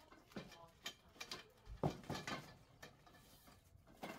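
Faint scattered clicks, taps and rustles of metal trellis parts and the paper instruction sheet being handled, with one louder knock a little under two seconds in.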